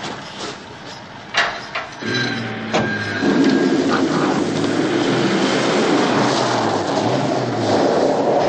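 A few sharp knocks in the first three seconds. Then a car engine revs up and runs loud and steady as the car speeds away.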